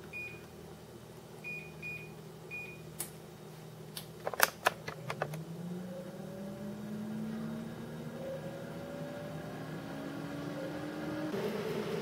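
Air fryer touch-panel beeps as the time and temperature are set, a few sharp clicks, then the fan motor starting up, its hum rising slowly in pitch as it spins up for an 8-minute cook at 370 °F.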